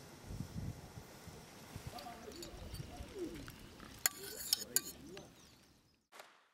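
Faint outdoor ambience with soft cooing bird calls, and a few sharp clicks about four seconds in.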